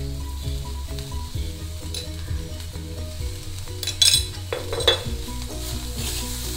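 Chopped broad beans sizzling in oil in a kadai as they are stirred and tossed with a metal spatula, with two sharper scrapes of the spatula against the pan about four and five seconds in.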